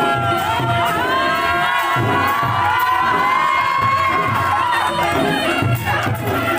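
A crowd cheering and whooping, many voices calling over one another in long rising and falling cries.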